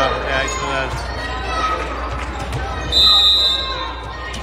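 Volleyball rally in a gym: players' shouts and sharp ball strikes echo around the hall. About three seconds in, a referee's whistle blows one steady blast of about half a second, ending the point.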